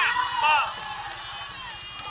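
A ringside commentator talking fast over the noise of an arena crowd; the voice stops about two-thirds of a second in, leaving the crowd din.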